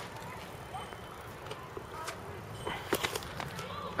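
A BMX bike rolling across concrete, faint under low outdoor background noise, with a few light clicks and distant voices.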